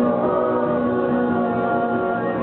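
Live band music with several voices holding long sung notes.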